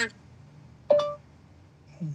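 A single short, bright ding about a second in, dying away quickly, over faint room tone.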